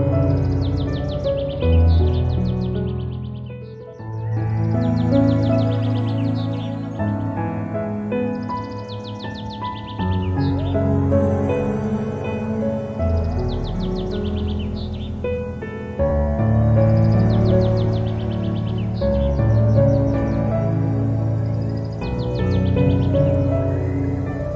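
Calm, new-age style instrumental background music with short bird chirps recurring every few seconds.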